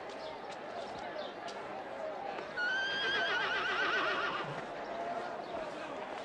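A horse whinnies once, a wavering call of about two seconds starting a little before the middle, over a steady background of murmuring voices.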